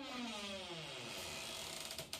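Motor vehicle passing, its engine note falling in pitch, over a steady hiss that cuts off suddenly at the end.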